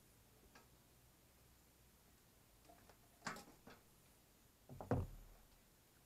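A few light clicks and then a louder knock with a dull thud near the end, from trailer hub parts being handled on a wooden workbench; otherwise near quiet.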